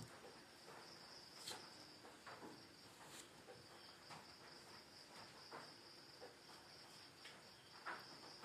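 Near silence: a faint, steady high-pitched trill runs throughout, with a few faint scratches of a pen writing on paper.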